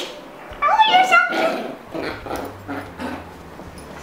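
Yorkshire terrier whining: a few high, wavering whimpers in the first two seconds, then fainter.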